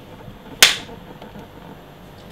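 A film clapperboard's clapstick snapped shut once: a single sharp clack about half a second in, with a short decay. It slates the take and marks the sync point for picture and sound.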